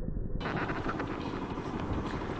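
Motorcycle riding noise through a rider's camera: steady wind rush over engine rumble. The sound opens out and gets brighter less than half a second in.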